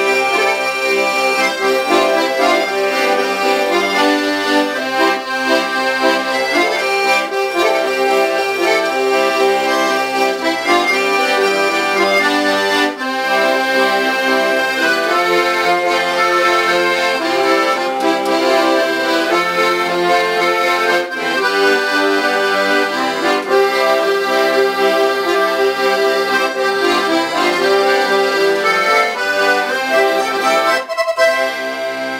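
A piano accordion and a button accordion (melodeon) playing a tune together as a duet, with steady reedy chords and melody throughout.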